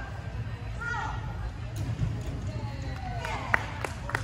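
Indistinct voices in a large indoor arena over a steady low rumble, with a few sharp clicks near the end.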